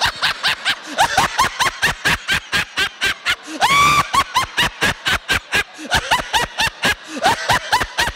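A man laughing hard into a handheld microphone in rapid, regular bursts, about five a second, with one long high-pitched whoop just before the middle. It is deliberate, all-out laughter held for twenty seconds as a laughter exercise.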